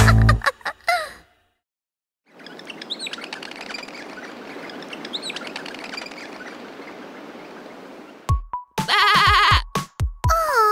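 A lamb bleating several times near the end, a loud wavering call. Before it, a soft outdoor background with birds chirping, and at the start the last notes of a children's song ending.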